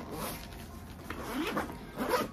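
Zipper on a fabric backpack being pulled open to reach a compartment, in short separate pulls.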